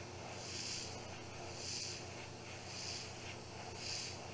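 Airbrush spraying thinned paint in light, short passes: a soft hiss that swells and fades about once a second.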